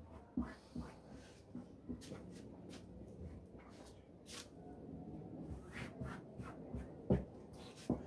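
Cloth being smoothed and shifted by hand on a wooden cutting table: faint rustling with a scatter of light knocks and clicks.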